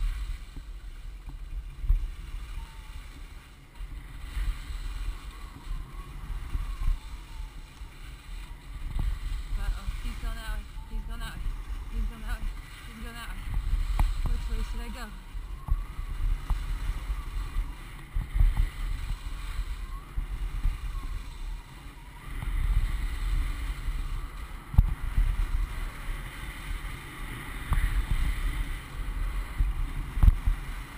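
Sliding down a groomed ski run: the hiss and scrape of edges on packed snow, swelling and fading every few seconds with the turns, with wind buffeting the camera's microphone. Faint voices come through about midway.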